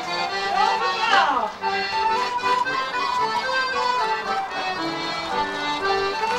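Accordion playing a traditional dance tune, with voices in the background and a brief sliding pitch about a second in.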